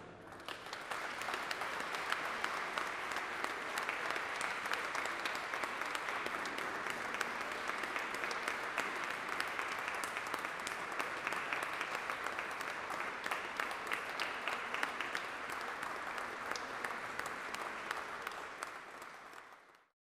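Audience applauding, starting a moment in, holding steady and fading out near the end.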